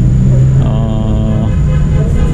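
Steady, loud low rumble of background noise, with a short held pitched tone a little under a second in.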